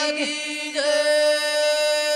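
Devotional bhajan music: a steady held drone note sounds under the singing. A short sung vocal glide comes in briefly about a second in.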